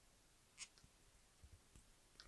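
Near silence, with faint small clicks and soft handling thuds from fingers working at a stripped cable end; the clearest click comes about half a second in.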